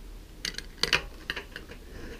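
A handful of light clicks and taps as an aluminum radiator and its freshly removed cap are handled.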